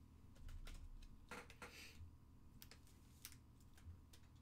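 Faint, irregular light clicks and a short rustle about a second and a half in, from a trading card being handled and slipped into a clear plastic card holder.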